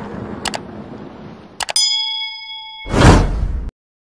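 Edited-in intro sound effects for a subscribe-button animation: a click, then a quick double click and a bell-like ding that rings for about a second. This is followed by a loud whoosh that cuts off suddenly.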